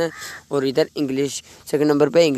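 A man speaking Urdu in short phrases.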